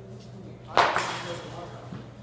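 Baseball bat striking a pitched ball once, a sharp crack about three quarters of a second in that rings briefly in the hall.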